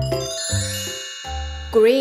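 A bright sparkling chime jingle that rings out at the start and slowly fades, over bouncy children's background music with a steady beat; a short swooping pitched sound comes in near the end.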